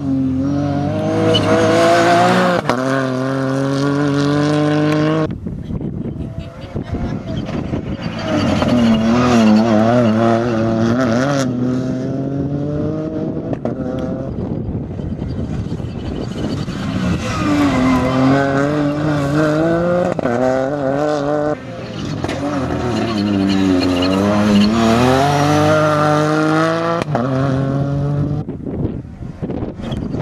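Ford Fiesta rally car engine revving hard, its pitch climbing and dropping again and again with gear changes and lifts, and wavering in places. The sound changes abruptly a few times.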